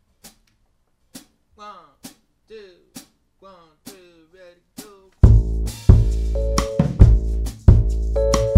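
A steady count-in of sharp clicks, with short falling pitched slides over them, then a little past five seconds the band comes in together: drum kit with bass drum and snare, upright bass and keys playing the song's groove.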